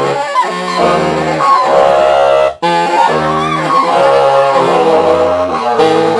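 Baritone and tenor saxophones improvising together: a series of long, low held notes, each about a second long, broken by short gaps, with higher lines sounding above them.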